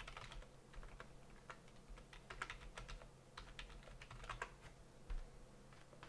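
Faint typing on a computer keyboard: irregular runs of key clicks, with a low steady hum beneath.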